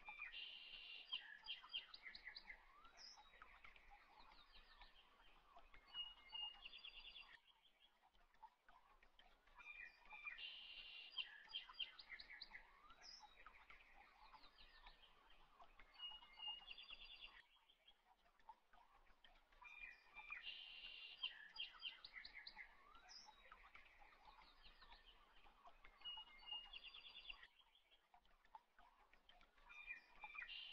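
Faint bird chirps and quick trills. The same stretch of song repeats three times, about every ten seconds, with short quieter gaps between.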